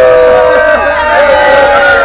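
A group of young voices attempting ganga, the traditional Herzegovinian group singing: several singers hold loud, close-pitched notes together, wavering and not holding together, a failed attempt.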